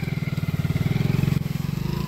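Small motorcycle engine running at a steady low speed as the bike pulls away, its firing pulses coming in a rapid, even rhythm.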